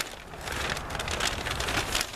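Rustling, crunching noise in several bursts about half a second apart.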